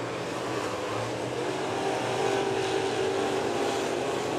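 Dirt-track sportsman race cars running at speed around the oval, a continuous engine note that swells a little about two seconds in as the cars come closer.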